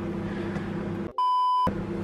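A microwave oven running with a steady hum. About a second in, a half-second electronic censor bleep at a single pitch cuts it off and blanks the audio, then the hum returns.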